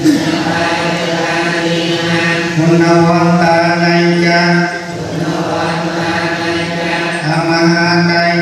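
Buddhist devotional chanting in long, drawn-out held notes on a steady pitch. It eases into a softer, more broken stretch about five seconds in, then the held notes return near the end.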